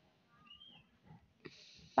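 Very quiet: a faint short high-pitched sound a little before halfway, then a single soft click about three-quarters of the way in as a glass lid is set on the cooking pot, followed by a faint hiss.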